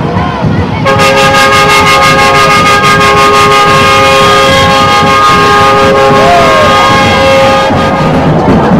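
A two-tone horn blown in one continuous blast of about seven seconds, starting about a second in, over the noise of a crowd.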